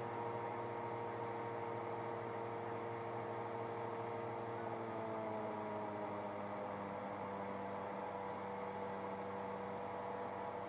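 Simulated aircraft engine drone in a Piper Chieftain flight simulator: a steady hum of several tones whose pitch sinks a little about halfway through as the power levers are pulled back to climb power.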